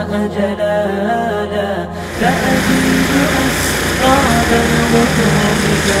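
Background music: an unaccompanied sung Islamic nasheed with a wavering vocal melody and no beat. From about two seconds in, a wash of outdoor street and crowd noise is mixed in under the singing.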